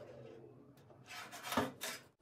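Handling noise of a plastic squeeze bottle being moved and set down on a stainless steel sink draining board. Two or three brief scraping, rubbing sounds come in the second half.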